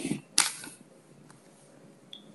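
A short rustling burst right at the start, then a single sharp click about half a second in, close to the microphone. After that there is only faint room tone.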